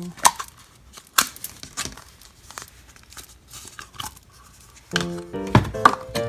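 Plastic Play-Doh tubs and lids being handled and opened by hand, a string of sharp clicks, knocks and scrapes. Music with piano-like notes comes in about five seconds in.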